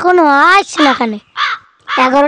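A boy talking in a fairly high-pitched voice, in short loud phrases.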